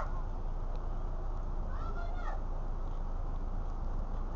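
A young child's high-pitched call, rising and then falling, about two seconds in, over a steady low rumble.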